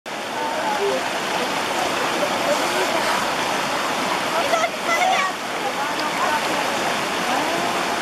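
A rocky mountain stream rushing steadily, with faint voices calling now and then over the water.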